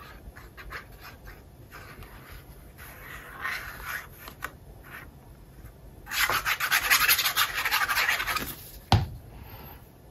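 Paper being handled and glued: a liquid glue bottle's nozzle scratching along the edge of a cardstock piece, with light rustling that turns to a louder scratchy rubbing for about two seconds past the middle. Near the end comes a single sharp knock as the glue bottle is set down on the cutting mat.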